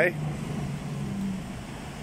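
Urban street traffic: a low, steady vehicle hum that eases off about a second and a half in.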